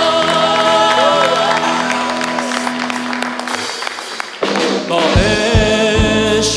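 A live worship band playing a slow song, with sustained keyboard-like chords under a melodic line. About four seconds in the music thins to a brief lull, then the band comes back in fuller, with heavy low hits.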